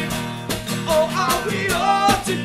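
Acoustic punk song: a steadily strummed acoustic guitar with a snare drum keeping the beat, and male voices singing a line from about half a second in.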